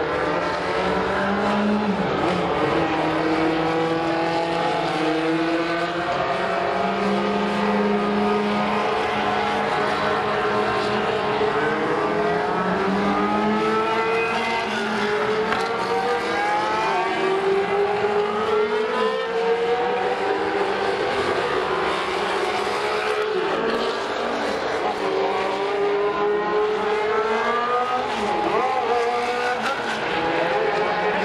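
A group of race car engines running together on a road course, their overlapping notes repeatedly climbing in pitch and dropping back as the cars accelerate and shift.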